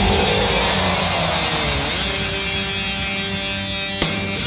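Black/thrash metal recording: a sustained distorted electric guitar chord ringing out and slowly fading, with a noisy sweep through it and no drumbeat.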